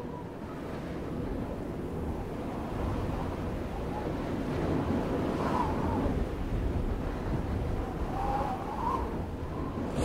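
A wind-like rushing sound effect under an animated title, swelling slowly in loudness. Faint whistling tones waver above it twice.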